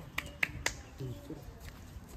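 Three sharp clicks in quick succession, about a quarter second apart, followed by a brief faint murmur of a voice.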